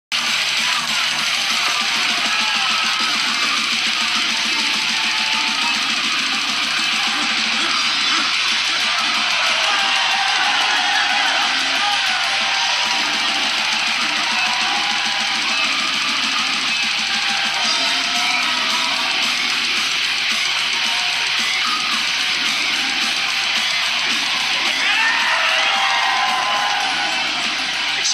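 Loud heavy metal music with distorted electric guitars and yelled vocals, dense and steady.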